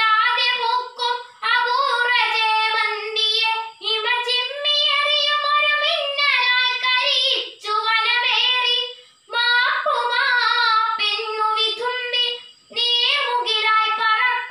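A girl's solo voice chanting a Malayalam poem in the sung kavithaparayanam style, unaccompanied, in long held melodic phrases separated by short breath pauses.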